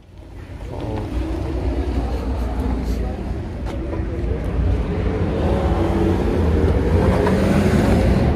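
Steady low rumble of wind buffeting the microphone, fading in during the first second, with indistinct voices of people nearby underneath.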